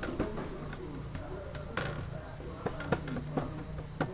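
Crickets chirping steadily in the background, with low murmured voices and a few light knocks from handling dough tools.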